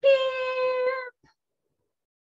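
A woman's voice imitating a chick's "piip!", one high, drawn-out squeaky note held at a steady pitch for about a second.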